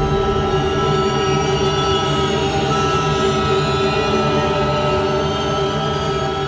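Background score of held synthesizer chords: several steady tones sounding together at an even level, with no beat.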